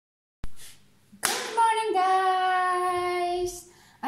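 A sharp click, then a woman's voice singing out one long held note that steps down in pitch once and holds for about two seconds before stopping.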